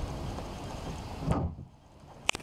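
Wind noise on the microphone, then a single thump about a second and a half in as the anchor locker hatch lid is shut.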